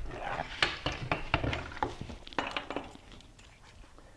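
Irregular metal clicks and clinks of tie-down strap hardware being handled and fitted into steel E-track at a car's front wheel, dying away near the end.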